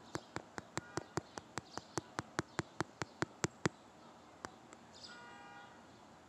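A quick, even series of sharp clicks, about five a second, growing louder and then stopping a little over halfway through. Near the end there is a brief faint pitched sound.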